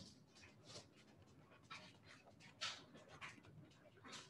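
Near silence: low room tone with a few faint, short hisses.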